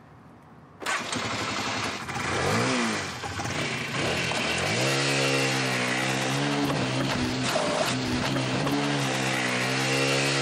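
A small motorcycle engine starts about a second in and is revved. It then settles into a steady run, with the pitch rising briefly a few times as the throttle is blipped.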